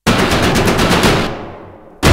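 A sudden burst of rapid, machine-gun-like hits that fades away over about a second and a half.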